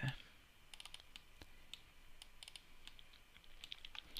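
Faint, scattered clicks of a computer mouse and keyboard, coming singly and in short quick clusters.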